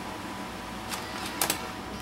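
A laptop's optical drive taking in a DVD: a couple of short mechanical clicks about a second in and again near one and a half seconds, the second the loudest, over a steady low hum.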